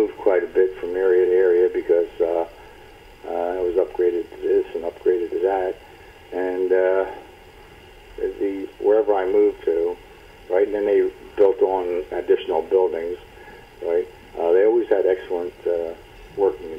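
Speech only: a man talking in phrases with short pauses.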